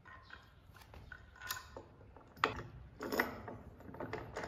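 Faint handling sounds of assembling a wooden reformer bed frame: a wooden post knocking and rubbing against the frame and a knob screw being turned, with two louder knocks and scrapes about two and a half and three seconds in.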